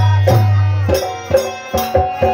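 Instrumental passage of a live Hindu bhajan: harmonium playing sustained melody over a dholak hand drum beating a steady rhythm, with jingling metal percussion on top.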